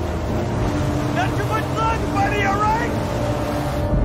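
Jet ski engine running at speed with hissing water spray, over a held, tense orchestral score. A man's voice yells about a second in, for a couple of seconds. The engine and spray noise cut off suddenly at the end.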